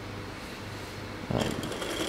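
A small electric motor on a toy car starts running about a second and a half in, with a steady high whine, as a metal-air battery begins delivering current once salt-water electrolyte is poured into it. Before it starts there is only a faint low hum.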